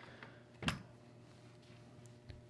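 A single dull knock as a CZ Scorpion carbine is turned over and laid on a padded bench mat, over quiet room tone.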